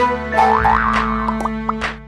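Short cartoon logo jingle: bouncy music with springy boing effects, a couple of swooshes and small clicks.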